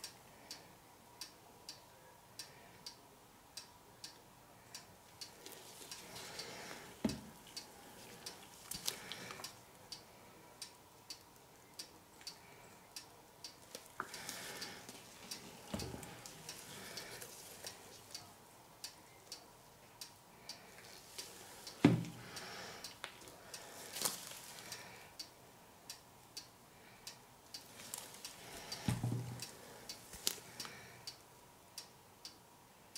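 Steady, faint ticking a little more than once a second throughout. Over it come the soft handling noises of a plastic squeeze bottle drizzling acrylic paint, with a few knocks, the sharpest about two-thirds of the way through.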